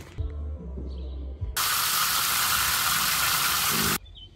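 A low rumble for the first second and a half, then a loud, steady hiss that starts suddenly and cuts off abruptly just before the end.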